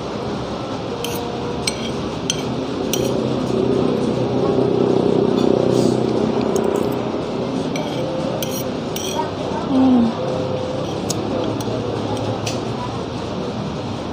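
Metal spoon and fork clinking and scraping against a ceramic plate while someone eats, a dozen or so light clinks scattered through the stretch, over a steady background murmur of voices.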